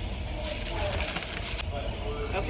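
Paper and foil food wrappers crinkling as a burrito is handled and unwrapped, in a crackly patch lasting about a second, under a steady low rumble.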